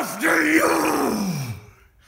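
A man's long, strained groan, voiced through clenched teeth. It starts with a short loud burst, then slides steadily down in pitch and fades out about a second and a half in.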